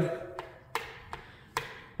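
Wall toggle light switches being flipped: four short, sharp clicks in quick succession, as the switch for the outside lights is worked.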